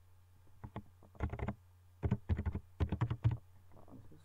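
Typing on a computer keyboard: a quick run of keystrokes in three short bursts.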